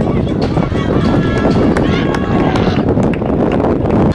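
Shouting voices of players and spectators over heavy wind noise on the microphone, with a few sharp knocks.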